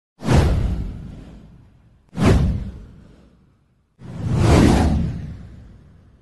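Three whoosh sound effects from a video intro. The first two hit suddenly and fade over about a second and a half. The third swells up more slowly about four seconds in, then fades away.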